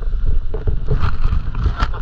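Wind buffeting the camera's microphone as a loud low rumble, with a few short knocks from the camera being handled. The sharpest knock comes near the end.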